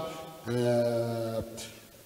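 A man's voice holding one steady low hummed note for about a second, starting about half a second in.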